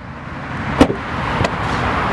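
Power tailgate of a 2014 Ford Mondeo estate opening at the press of its button. A sharp click of the latch comes just under a second in and a lighter click about half a second later, over a rushing noise that grows louder.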